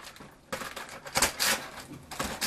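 A cardboard advent calendar door being torn open by hand, giving a few short rustling rips of card and paper, starting about half a second in.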